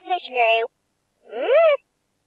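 High-pitched talking-toy voice of a peek-a-boo plush bunny: a short voice phrase, then after a pause one swooping call that rises and falls in pitch.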